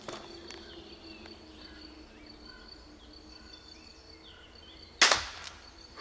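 A single shot from an EK Archery Adder repeating pistol crossbow fitted with Venom Extreme 190-pound limbs, about five seconds in: one sharp, loud crack of the string and limbs releasing, dying away within about half a second.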